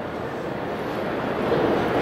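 Steady rushing background noise with no distinct events, growing slightly louder toward the end.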